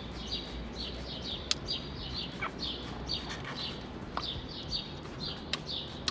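A small bird chirping over and over, short high falling chirps several a second, with a couple of sharp clicks in between.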